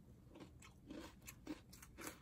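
Faint chewing of a mouthful of açaí bowl with granola topping: a few soft, scattered crunches and mouth clicks.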